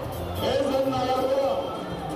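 Music with a voice singing, holding long notes and gliding between them.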